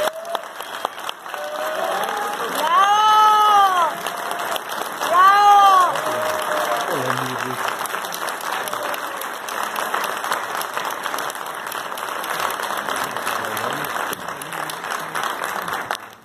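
Audience applauding steadily after an honorary doctorate is conferred. A voice calls out twice over the clapping, about three and five seconds in, each call rising and then falling in pitch.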